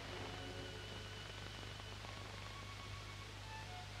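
Soft background music of held notes, faint beneath the steady low hum and hiss of an old film soundtrack.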